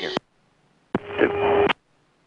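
Cockpit radio transmissions: the end of one call, then a short, unclear transmission about a second in that switches on and off abruptly as the mic is keyed. A steady hum runs under each transmission.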